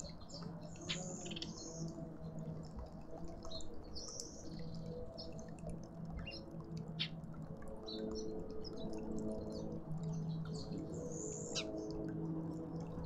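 Small garden birds chirping: short, high calls scattered throughout, faint, over a steady low hum.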